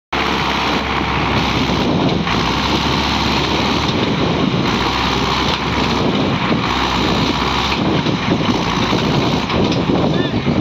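Ursus C-360 tractor's four-cylinder diesel engine running loud and steady under load as it pulls on a tow chain in soft, ploughed soil.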